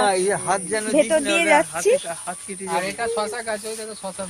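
A woman talking, with a short pause near the middle, over a steady high-pitched hiss.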